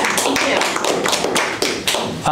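A small group of a few people applauding, with quick, irregular hand claps.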